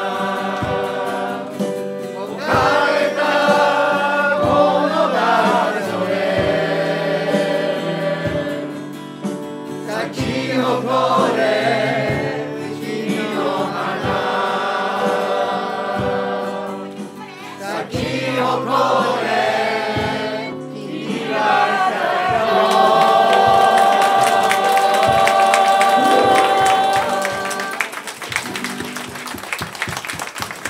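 A mixed group singing a song together in chorus, accompanied by an acoustic guitar, ending on a long held note. Clapping starts as the song fades near the end.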